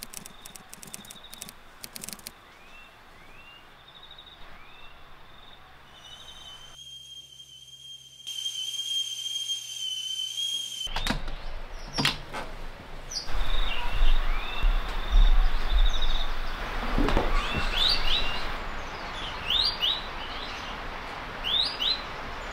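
Small birds chirping and calling in rural bushland, short chirps repeating over a steady high trill. Two sharp clicks come about halfway through, and after them a low rumble sits under the bird calls.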